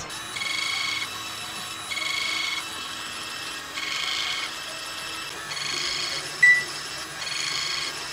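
Ultherapy ultrasound machine sounding an electronic tone as it fires each treatment pass: five steady tones just under a second long, about every two seconds, with a short, sharper beep about six and a half seconds in.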